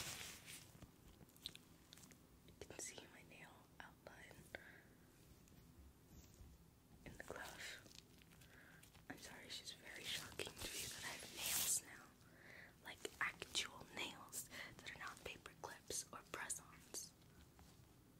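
Latex-gloved hands rubbing, squeezing and tapping close to a microphone, making soft crinkles and sharp little clicks. The sounds grow busier and louder from about seven seconds in.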